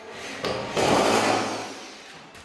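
Corded electric drill running, with a louder, rougher stretch of about a second as it works into a drywall sheet, then easing off.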